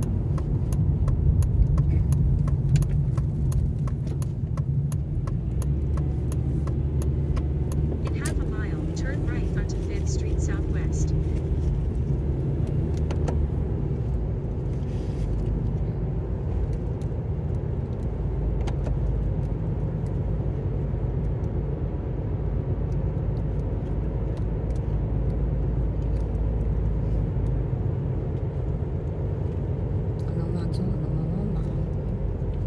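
Steady low rumble of road and engine noise inside a moving car, with scattered light ticks.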